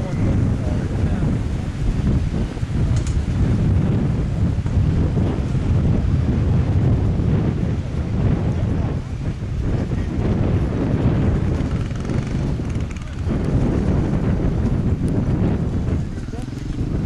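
Wind buffeting the camcorder microphone: a dense low rumble that swells and dips unevenly.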